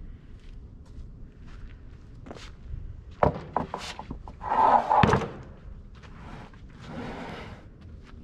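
Wooden slab of freshly sawn black walnut handled onto a stack of lumber. A few sharp knocks come about three seconds in, then a scraping slide ends in a loud thud around five seconds, and a shorter slide follows near the end.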